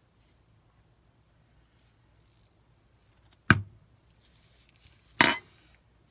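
A metal spoon clinking twice, two sharp knocks a bit under two seconds apart, as it is knocked against the plastic mixing bowl and laid down. Otherwise near silence.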